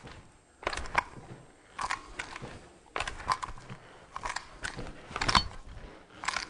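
Metal parts of an AK rifle clacking and rattling as it is handled and swung about, with no round in the chamber: about five sharp clatters roughly a second apart, the loudest near the end.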